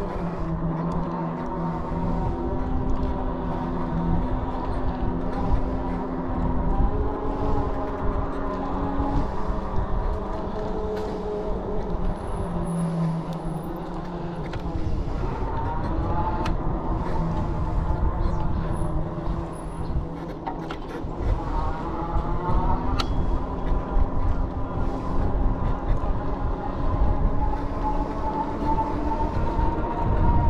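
Electric bike motor whining in steady tones whose pitch rises and falls with speed, over a low rumble of wind on the microphone.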